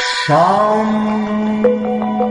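Meditation music with a chanted mantra. A bright struck sound opens it, then a long low chanted note slides up and settles into a steady hold over a quick pattern of plucked notes.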